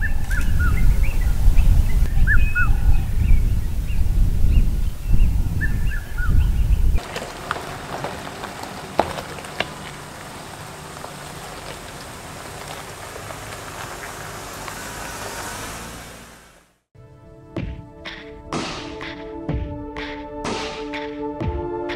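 Wind buffeting the microphone with birds calling over it, short chirps several times. About seven seconds in it cuts to a much quieter steady hiss with scattered clicks, and near the end music with sustained tones begins.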